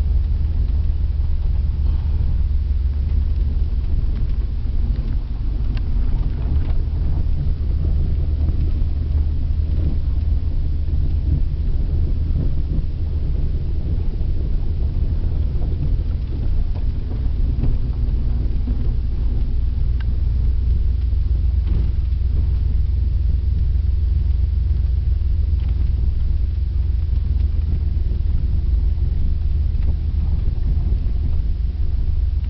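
Dodge Dakota pickup running on wood gas from an on-board gasifier, heard from inside the cab while driving on a dirt road: a steady low engine and road rumble.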